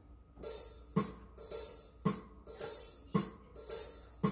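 A steady backing drum beat for timing practice: hi-hat or cymbal hits with a low drum on some beats, about two beats a second, with no keyboard notes yet.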